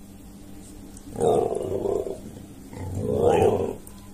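An animal calling twice, each rough call about a second long with a short gap between them.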